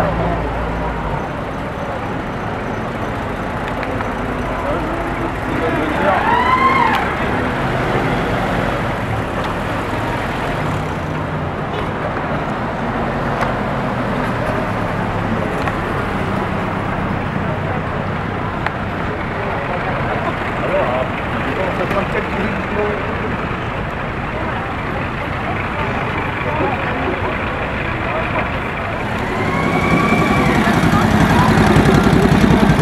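Military vehicles driving past in a street parade, their engines running, over the chatter of a crowd lining the street. A short rising-and-falling call rises above it about six to seven seconds in.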